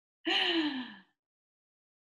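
A woman's brief wordless vocal sound: a single note falling in pitch, lasting under a second, like a sigh.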